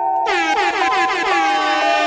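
DJ air-horn sound effect over the beat. It comes in just after the start as a bright blast with quick, repeated downward swoops, over steady bell-like music.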